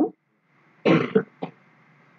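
A man clears his throat with a short cough about a second in, followed by a smaller second catch.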